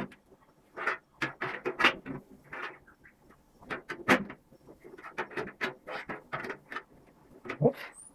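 Roofing tongs gripping and bending the top edge of a galvanized steel flashing sheet: a run of irregular metallic clicks and crinkles as the thin metal is worked over.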